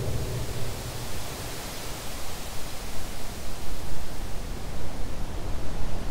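Synthesized noise from a Reaktor techno synth patch: a steady hiss across the whole range with a rumbling, unevenly pulsing low end, no kick drum playing.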